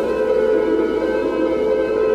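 Dark dungeon-synth music: held synthesizer pad chords droning steadily with no drums.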